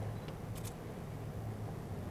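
A few faint clicks from an LED headlight bulb's small plastic cooling fan being handled and fitted onto the bulb's base, over a steady low hum.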